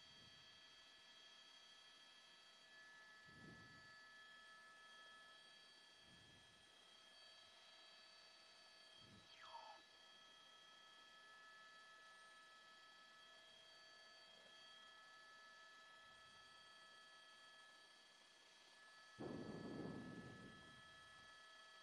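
Near silence: faint steady electronic tones over hiss. A few soft low thumps and a brief falling chirp come about halfway through, and a short louder rumble near the end.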